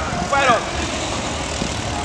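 A player's short shout on the pitch, falling in pitch, about half a second in, over a steady low rumble of background noise.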